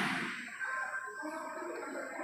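Faint voices of people in the background, with no loud event.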